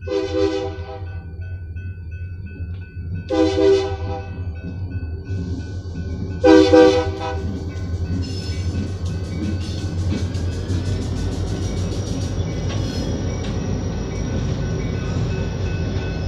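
EMD GP40-2 diesel locomotive air horn sounding three blasts about three seconds apart for a grade crossing, the third the loudest, over the steady ringing of the crossing bells. The locomotive's diesel engine rumble grows louder in the second half as it draws near.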